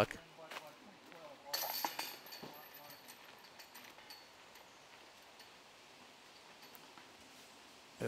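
Disc golf basket chains jingling briefly as a disc is tapped in, a short metallic rattle about a second and a half in, followed by faint outdoor background.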